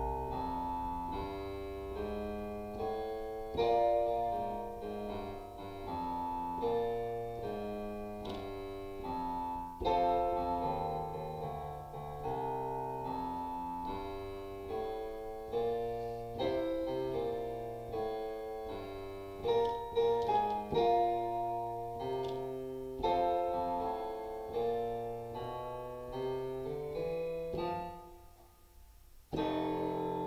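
Yamaha digital piano playing a beginner jazz piece in F major: a walking bass line in the left hand under right-hand chords, with the quavers swung long-short, at a moderately loud level. The playing breaks off for about a second near the end, then a low note sounds.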